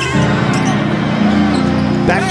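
A basketball being dribbled on a hardwood court during game play, over steady music.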